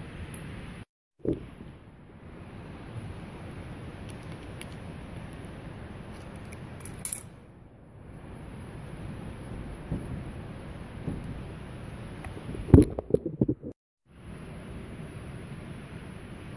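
Handling of bicycle components and hand tools: scattered metallic clicks and knocks over a steady background hiss, with a loud cluster of clattering knocks near the end. The sound drops out completely twice, briefly.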